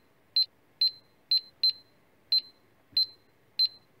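Light-gate data logger ('beepy box') beeping each time the light gate's infrared beam is blocked, here by a passing hand and then a sheet of paper. Seven short, high-pitched beeps at uneven intervals, each a quick double pip.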